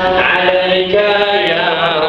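Men chanting an Islamic devotional chant in long, drawn-out notes, with one low note held steadily underneath.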